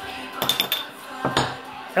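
Metal bottle opener working the crown cap off a glass beer bottle: a few quick clinks about half a second in, then a louder click about a second and a half in.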